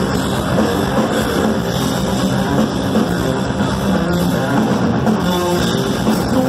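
Live rock band playing: electric guitar over drum kit, loud and steady, heard through a crowd-level recording in a large hall.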